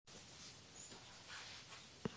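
Near silence: faint room tone with only slight, indistinct stirrings.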